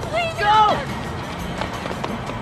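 A few short, high-pitched shouted cries from people in the first second, over background music and street noise.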